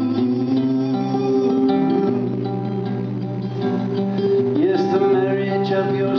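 Acoustic guitar playing ringing chords with a melody moving above them.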